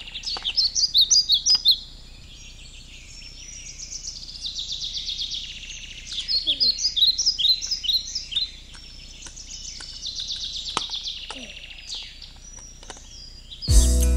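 A bird chirping and trilling in quick repeated high phrases, loudest at the start and again around the middle, with a few light clicks. Guitar music starts just before the end.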